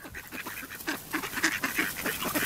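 A flock of mallards calling in many short, overlapping quacks while crowding in to be fed.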